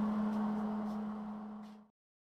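A steady low hum with a few faint clicks, fading down until the sound cuts off abruptly near the end.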